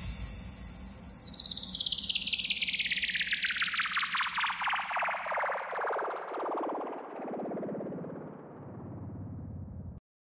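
Synthesizer sweep closing a DJ remix: a rapidly pulsing electronic tone glides steadily down in pitch from very high to low over about ten seconds, growing fainter, then cuts off.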